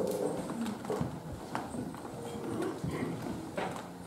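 Scattered light knocks and clicks at irregular intervals over low room noise.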